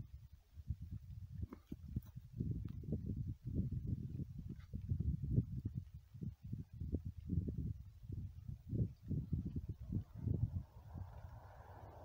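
Wind buffeting the microphone in uneven gusts, a low rumble that swells and drops every second or so, with a soft hiss, likely wavelets on the lake, coming up near the end.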